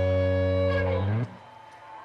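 A rock band's electric guitars holding a final ringing chord, which bends down in pitch and cuts off about a second in, leaving only a faint background hubbub.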